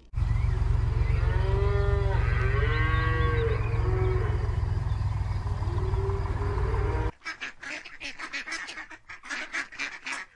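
Several short honking calls of waterfowl over a heavy, steady low rumble. About seven seconds in this cuts off suddenly to a rapid run of short quacks and clucks from ducks and a hen.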